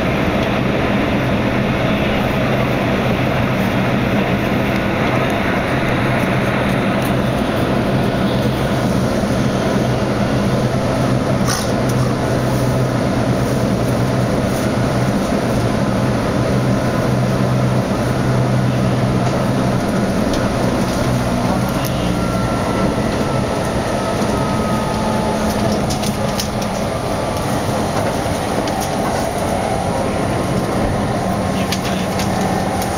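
Keihan electric train heard from inside the front car, running steadily: continuous wheel-and-rail noise over a low motor hum, with a few light clicks and a faint whine rising in pitch about two-thirds of the way through.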